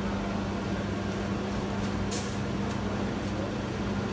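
Bakery dough machine and oven running with a steady, even hum. A brief hiss comes a little over two seconds in.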